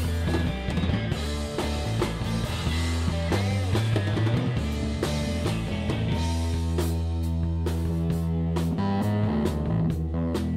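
A live rock band plays an instrumental passage with no singing: electric guitar over bass guitar and drum kit. The drum and cymbal hits stand out more clearly in the second half.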